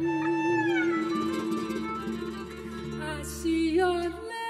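Violin playing a melodic fill, with a long held vibrato note and a sliding descent about a second in, over the band's plucked guitars, double bass and drums.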